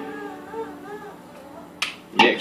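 A short pause in electric guitar playing through a Traynor YCV50 Blue tube amp: faint wavering notes linger over amp hiss, and a single sharp click comes near the end.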